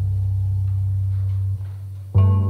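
A low plucked cello note ringing on, then damped about three quarters of the way through.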